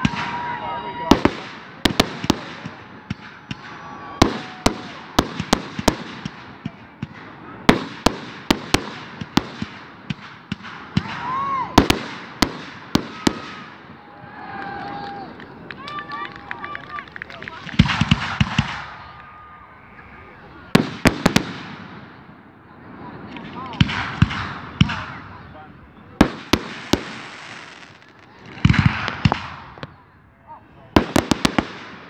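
Fireworks display: aerial shells bursting in sharp bangs throughout, many coming in quick clusters of several at once.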